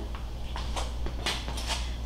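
Quiet room tone: a steady low electrical hum, with a few faint soft ticks.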